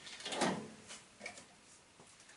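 Brief scrape and rustle of parts being handled on a workbench about half a second in, followed by a couple of faint clicks.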